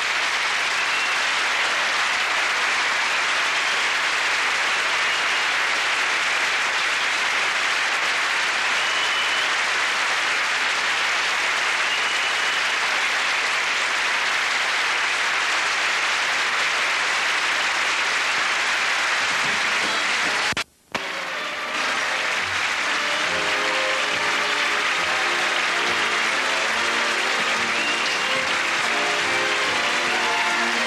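Studio audience applauding steadily and loudly after a musical number. About 21 s in, the sound cuts out for a moment; the applause then carries on with music playing under it.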